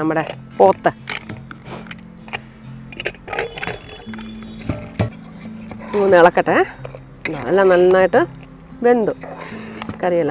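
A woman's voice over background music, with scattered light metal clinks in the first few seconds, typical of a steel ladle against an aluminium pressure cooker.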